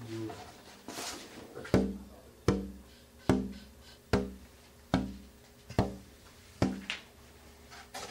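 Finger tapping on the wooden top of an unfinished acoustic guitar: about seven taps a little under a second apart, each ringing briefly with a low tone. It is a tap test of the top's tone, the taps setting the wood and the air inside vibrating.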